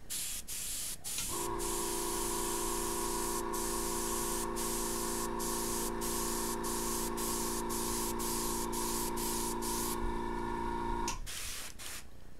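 Airbrush spraying paint in a steady hiss, cut by short pauses about twice a second in the second half as the trigger is worked, then stopping at about ten seconds after a couple of short bursts. Under it an air compressor hums steadily from about a second in until just after eleven seconds.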